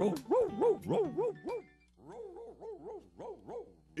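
A dog puppet's excited yelps, voiced by a performer: a run of short rising-and-falling yips about three a second, loud at first and turning softer and quicker about halfway through.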